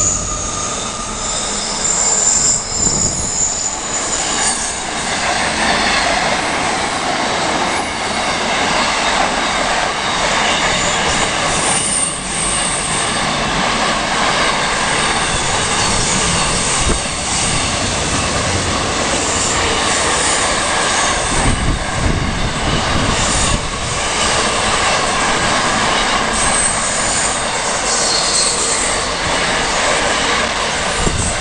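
Container wagons of a freight train rolling past at speed: a steady rumble and roar of steel wheels on rail, with brief high wheel squeals now and then.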